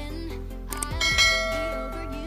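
Soft music, with a bell-like ding about a second in that rings steadily for just under a second.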